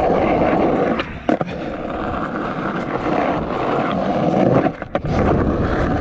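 Skateboard wheels rolling over rough concrete, a steady grinding rumble. A couple of sharp clacks come about a second in, and the rolling briefly drops away just before the five-second mark before picking up again.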